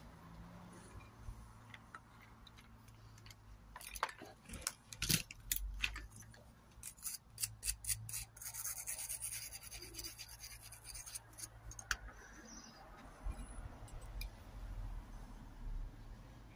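Hands working thin wire and small tools on a wooden board: scattered sharp clicks and scratchy rubbing, thickest in the middle of the stretch.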